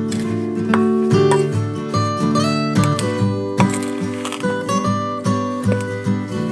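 Background music of plucked acoustic guitar, notes picked in quick succession and left to ring.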